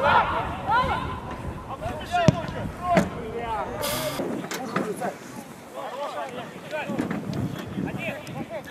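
Footballers' voices calling and shouting across the pitch, with a sharp knock of a ball being kicked a couple of seconds in and a brief hiss near the middle.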